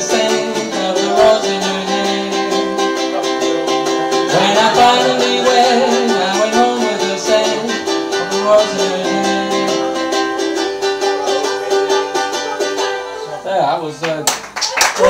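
Live music: a strummed ukulele playing the instrumental close of a song, which ends about a second before the end.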